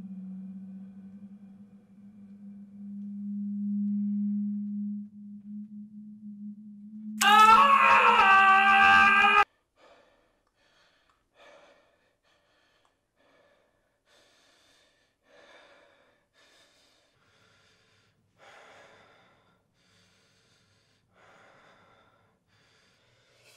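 A steady low drone, then about seven seconds in a loud, pitched cry that wavers at first and cuts off abruptly together with the drone about two seconds later. After it come only faint, short gasping breaths.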